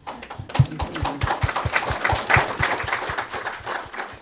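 Audience applauding: a dense run of hand claps that breaks out at once and dies away near the end.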